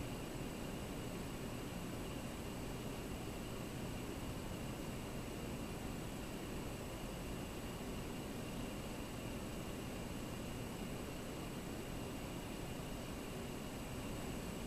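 Steady hiss of background noise with two faint, steady high-pitched tones running under it, and nothing else happening.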